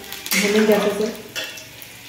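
Steel ladle stirring and scraping through masala frying in a steel kadhai, with a low sizzle and a sharp clink of metal on metal about one and a half seconds in.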